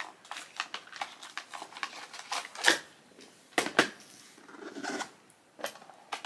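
Hands handling small plastic gift items and a hinged plastic storage case: a string of light clicks, taps and rustles, with a few sharper knocks about a third and two thirds of the way in.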